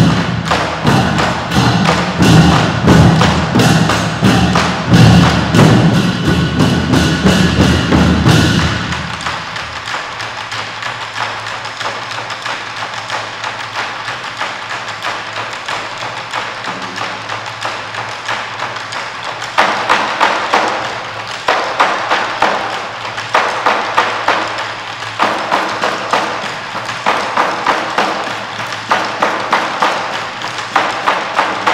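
Chinese drum ensemble playing loud, fast, dense drumming with deep booming strokes, which stops abruptly about nine seconds in. It drops to a quieter run of quick, even taps, and from about twenty seconds in louder accented hits return in short bursts.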